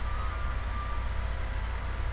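Room tone: a steady low hum with an even hiss.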